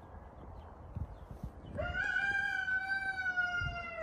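A rooster crowing once: a single long, drawn-out call that starts a little before halfway, rising briefly at its onset and then sinking slightly in pitch toward its end.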